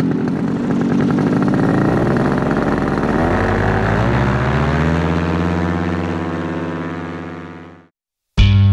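Tandem paramotor's two-stroke engine and propeller running hard through the takeoff run, its pitch rising a few seconds in as the throttle opens further. The sound fades out near the end.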